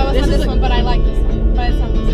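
A song with vocals playing on the car stereo, over the steady low rumble of the moving car's cabin.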